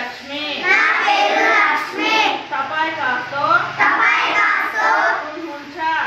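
A group of children reciting Nepali phrases together in chorus, phrase after phrase with short breaks between.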